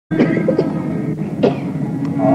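Steady tanpura drone of a Carnatic concert, with coughing over it, the strongest cough near the start and another about one and a half seconds in.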